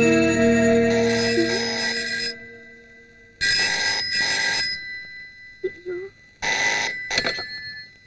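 A desk telephone's bell rings in double bursts: two rings, a pause of about three seconds, then two more, after a held music chord dies away.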